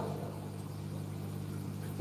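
A steady low hum with faint room noise under it.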